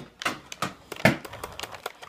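A few short, irregular clicks and knocks, about five in two seconds.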